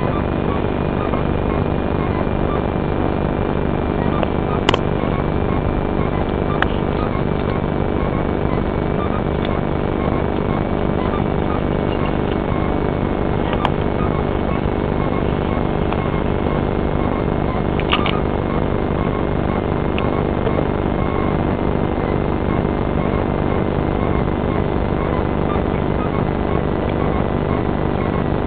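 Steady, unbroken drone of an aircraft engine heard from inside the cockpit, with a thin high whine that slowly sinks in pitch. A few faint clicks sound over it.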